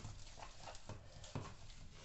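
A hand mixing a wet mixture of grated bottle gourd and gram flour in a plastic bowl: faint squelching with a few soft clicks about every half second.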